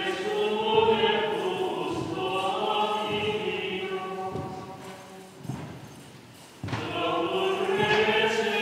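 A choir singing a slow religious hymn in long held notes. The singing falls away about halfway through, with a few dull thuds in the gap, and resumes near the end.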